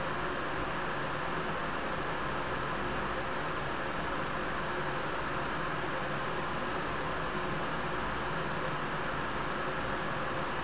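Steady, even hiss of room noise with a faint, very high steady whine; no separate inhale, exhale or coil sizzle stands out.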